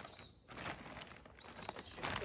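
A small bird's high chirps, one right at the start and another about a second and a half in, over the crinkle and rustle of a plastic bag of peat moss being handled.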